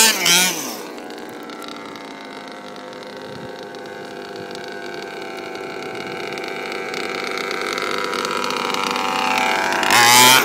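Two-stroke petrol engine of a large-scale RC car revving hard at the start, then running at a steady pitch as the car moves off, slowly growing louder toward the end.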